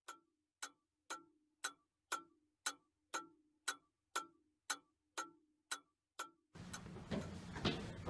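Clock ticking steadily, about two ticks a second, thirteen ticks in all, stopping about six and a half seconds in.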